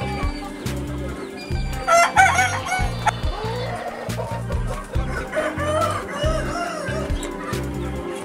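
Domestic chickens calling: a rooster crowing and hens clucking, loudest in a burst about two seconds in, then a longer run of lower calls. Background music with a repeating low beat plays underneath.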